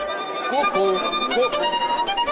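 Violin bowed in a slow line of a few held notes, moving from one note to the next about every half second.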